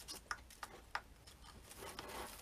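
A few faint, sharp clicks from hands handling craft materials on the table, in the first second, then only faint rustling.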